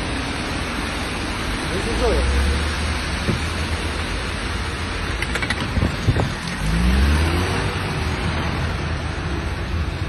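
Car traffic on a wet, rainy street: a steady hiss of tyres on water and rain, with a car engine swelling twice, the second time rising in pitch about seven seconds in as a car pulls away.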